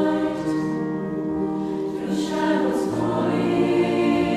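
Mixed choir of men's and women's voices singing sustained, held chords, moving to a new chord about half a second in and again near three seconds in, with soft sung 's' sounds between.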